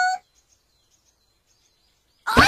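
A high-pitched voice ends a held vowel at the very start. Then near silence with a few faint, high chirps, like birds in an outdoor background.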